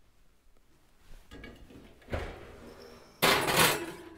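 Kitchen handling noises as a glass casserole dish is put into an electric oven: soft knocks from about a second in, then a loud, brief clatter near the end.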